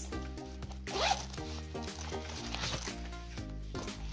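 Zipper on a fabric pencil case being pulled open, two quick rasps about a second in and again past the middle, over background music.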